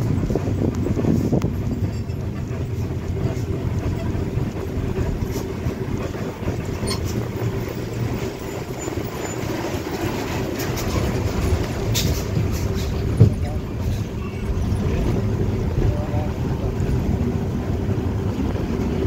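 Vehicle engine running steadily with road rumble, heard from inside the vehicle as it takes a hairpin bend, with a low droning tone throughout. A single sharp knock sounds about two-thirds of the way through.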